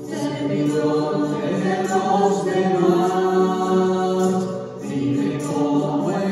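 A church congregation singing a hymn together, with long held notes and a short break between lines about five seconds in.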